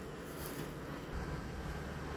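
Wind rumbling on the microphone: a steady, low outdoor noise with no distinct events.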